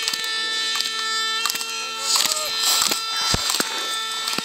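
Spectators' horns holding steady notes, with the hiss of slalom skis scraping over hard snow and sharp clacks as the skier knocks the gate poles aside.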